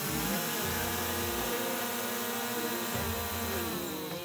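Small quadcopter drone's motors and propellers running in a steady, high buzz as it is held aloft by hand; the buzz cuts off just before the end.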